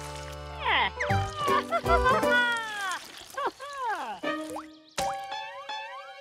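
Cartoon soundtrack: light background music with sliding, pitch-bending wordless character voices and cartoon sound effects, and a short break about five seconds in.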